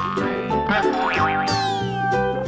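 Playful children's background music with sliding, cartoon-style pitch effects; a quick falling sweep comes near the end.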